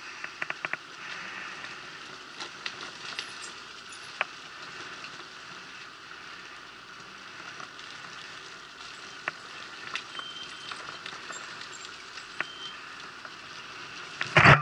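Kymco Agility City 125 scooter setting off slowly and picking up speed on a snowy lane, heard through an action camera: a steady hiss with scattered clicks and crackles and no clear engine note.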